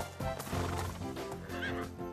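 Background music with a steady beat, and a horse whinnying briefly near the end.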